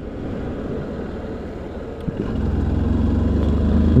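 Motorcycle engine pulling away and accelerating, growing steadily louder, with a steady low engine drone settling in about halfway through.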